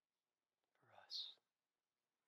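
Near silence broken once, about a second in, by a man's brief soft voice, a low sound ending in an 's' hiss.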